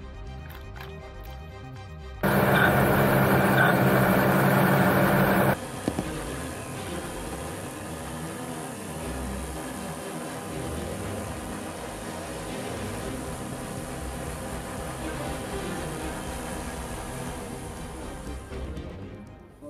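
Background music, with a loud burst of a multirotor drone's motors and propellers at close range from about two seconds in, with a steady low hum under a rushing hiss, cut off abruptly at about five and a half seconds.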